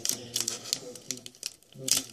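Foil trading-card booster pack crinkling in the hands: an irregular run of short, sharp crackles, the loudest near the end.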